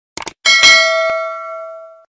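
Subscribe-button animation sound effect: a quick double click, then a notification bell dings and rings on, fading out over about a second and a half.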